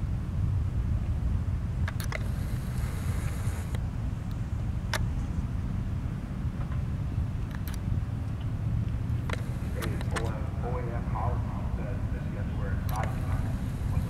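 Twin 225 hp outboard motors of a Coast Guard response boat running at low speed, a steady low rumble, with faint voices near the end.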